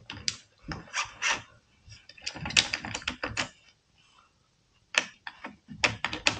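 Metal parts of a Hatsan Escort shotgun's bolt and recoil assembly clicking and scraping as they are worked into the receiver by hand. Irregular clicks and short rattles, the loudest cluster a little before halfway, then a brief lull before a few more clicks near the end.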